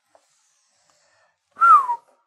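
Near silence, then about one and a half seconds in a man's short whistle through the lips: one note falling in pitch, with breathy noise.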